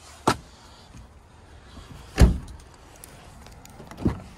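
A short click about a third of a second in, then a 2017 Honda Pilot's rear side door swung shut with one heavy thud about two seconds in.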